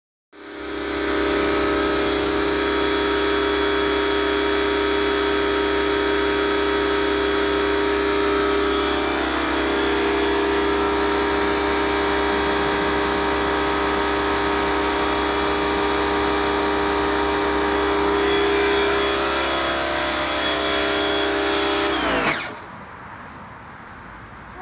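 Pressure washer running steadily with a constant hum while water sprays from the wand onto the deck boards; about two seconds before the end the motor winds down in pitch and stops.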